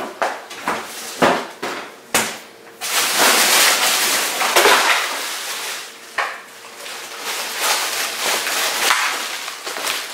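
Ice cubes being emptied from a bag into a plastic ice chest, rattling and clattering against the plastic and each other. A few separate knocks come in the first two seconds, then a long loud rush of sliding ice about three seconds in and another from about six seconds.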